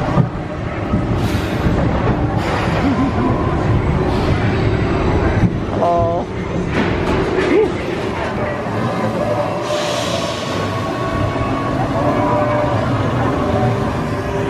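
Expedition Everest roller coaster train rolling slowly through its loading station: a steady rumble of wheels on track, with people's voices around it.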